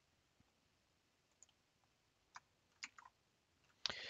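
Near silence: room tone with a few faint, short clicks spaced about half a second to a second apart in the second half.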